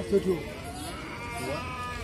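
Two short bleating livestock calls, the first loud near the start and the second rising about a second and a half in, over a steady background of market chatter.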